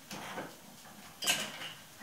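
Faint, distant voices of girls playing outside, with a brief brighter sound about a second and a quarter in.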